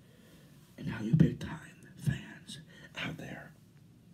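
A man whispering close into a handheld microphone in a few short breathy bursts, with a couple of sharp pops on the mic.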